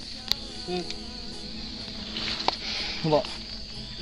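Insects droning in a steady, high-pitched chorus, with two sharp clicks in between.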